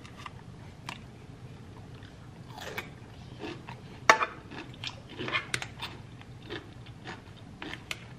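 Close-up chewing and crunching of a pickle eaten with hot Cheetos and ranch: irregular crisp crunches, the loudest about four seconds in.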